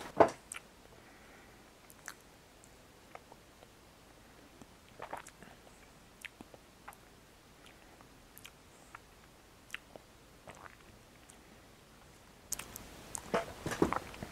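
Soft, scattered mouth clicks and smacks of a person chewing a sticky, chewy bite of paper wasp honey with bits of nest paper, with a sharper click just after the start. A rustle near the end.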